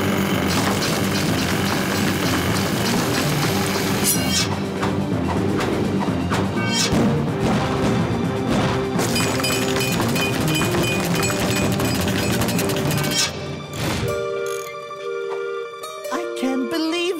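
Loud cartoon action music with crashing, crumbling effects of rock being dug through laid over it. About fourteen seconds in it drops away to a quieter tune of held notes.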